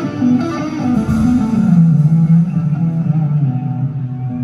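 Live band playing an instrumental passage, amplified through the arena's sound system, with an electric guitar to the fore. A run of notes falls and settles into a long held note.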